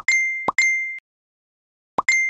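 Phone message-notification chimes as replies arrive in a group chat, typical of Facebook Messenger: each is a short pop followed by a bright ding. Two come half a second apart, and a third starts at the very end.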